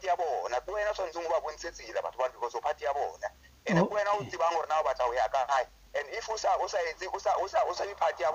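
Speech only: interview talk in a thin, radio-broadcast sound with little bass, broken by two short pauses.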